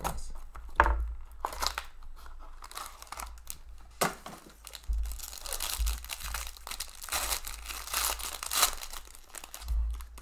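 A foil trading-card pack wrapper being torn open and crinkled by hand, with a sharp snap about four seconds in.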